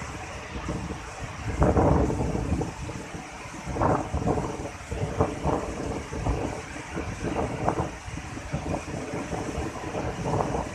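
Steady rush of a waterfall and white water over river rocks, with wind buffeting the microphone in irregular rumbling gusts, the strongest about two seconds in.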